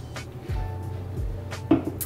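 Background music with a steady bass beat.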